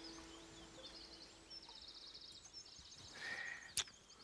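Faint background with a small songbird singing rapid high trills, and a single sharp click shortly before the end.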